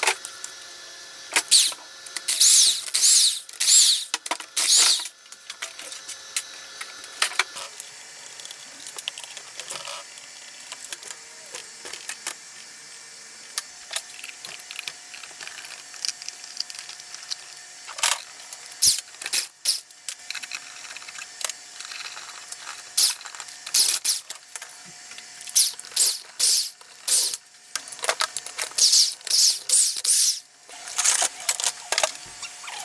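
Impact wrench hammering on engine bolts in short repeated bursts, a cluster a few seconds in and more through the last several seconds, with metal clicks and clinks of tools and parts in between. The wrench is unbolting a Honda Ruckus GET engine from its CVT case.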